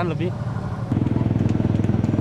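A motorcycle engine running close by, coming in about a second in as a steady low rumble with fast even pulsing.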